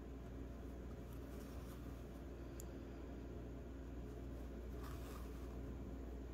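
Faint scratching and rustling of a yarn needle and acrylic yarn being worked through crocheted stitches, with a small tick about two and a half seconds in and a brief rustle near the end, over a steady low room hum.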